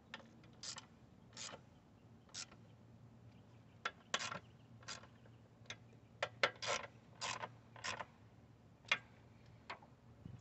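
Hand ratchet clicking in about a dozen short bursts at irregular intervals as the throttle body bolts are snugged down lightly.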